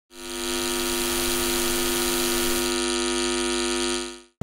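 A loud, steady electronic buzzing hum made of many layered tones. It fades in quickly, loses its highest hiss about two-thirds of the way through, and fades out at the end.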